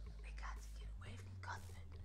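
A woman whispering faintly in a few short, breathy bursts, over a steady low hum.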